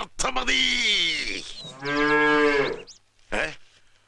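Cow-like mooing: one long call falling in pitch, then a second call held steady, with a short sound just after.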